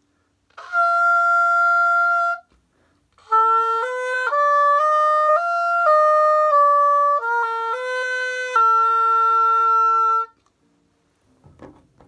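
Oboe playing one held F, then a five-note scale from B flat up to F and back down in short steps, ending on a long held B flat.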